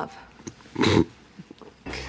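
A single short, breathy laugh about a second in.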